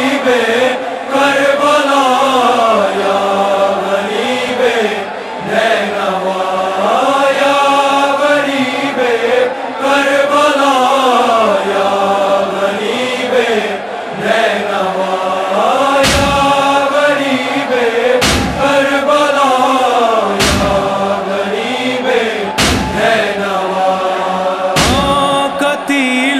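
Male voices chanting the slow, drawn-out opening lament of an Urdu nauha, unaccompanied by instruments. From about sixteen seconds in, deep thumps join roughly every two seconds.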